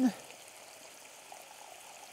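Dry white wine poured in a thin stream from a glass into a stainless saucepan of risotto rice, a faint steady trickle.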